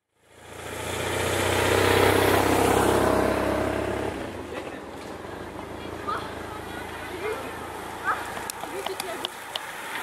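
A motor vehicle engine running close by, loud at first, its steady low hum stopping abruptly about four seconds in. After that come quieter background noise, faint voices and a few light clicks.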